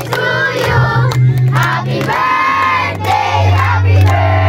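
A group of people singing together in long held notes over a musical accompaniment whose low notes change twice.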